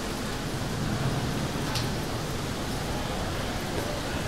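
Airport terminal ambience: a steady wash of noise with a low rumble, and one short sharp tick a little before the middle.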